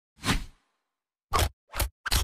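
Edited intro sound effects: a whoosh that fades out, then after about a second of silence two short, quick swishes with a low thump in each.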